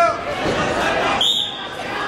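A referee's whistle blown once, a short, high, steady blast about a second in, stopping the wrestling action, over voices and chatter in a large gym.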